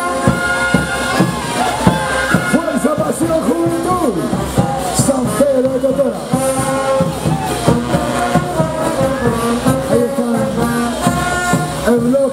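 Live brass band playing a caporales dance tune, loud and continuous, with a steady beat.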